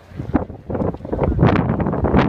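Wind buffeting a phone's microphone in rough, irregular gusts, starting about a third of a second in and growing louder from about a second in.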